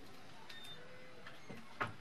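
Quiet room tone between speakers, a faint steady hiss with one soft click about a quarter of the way in.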